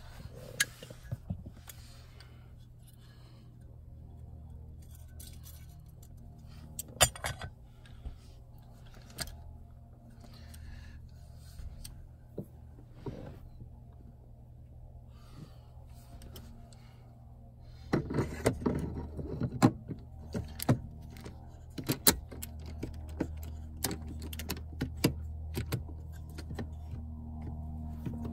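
Metal clicks, knocks and rattles as a BMW E39 steering lock housing is handled and slid back over the steering column tube. There are a few scattered single clicks, then a busier run of clicks and clatter about two-thirds of the way through, over a steady low hum.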